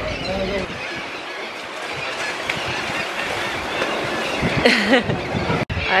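Surf washing onto a sandy beach, a steady rushing sound that builds slightly, with faint voices about half a second in and again near the end.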